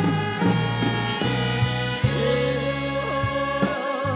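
Trot song performed live: a band with steady bass and drum hits under female backing singers' voices, with a long wavering held note from about two seconds in.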